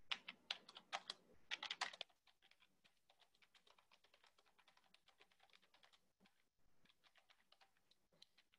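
Typing on a computer keyboard: a run of louder keystrokes in the first two seconds, then fainter, quicker typing that stops near the end.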